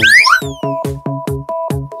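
Bouncy background music with a steady beat of about four notes a second, opening with a cartoon swoop that rises sharply and then falls in pitch.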